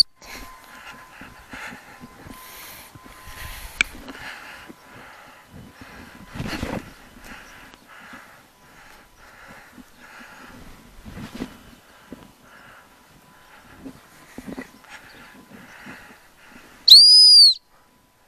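A gundog whistle blown once near the end, a single clean high-pitched blast of about half a second, much louder than anything else. Before it there is only faint rustling.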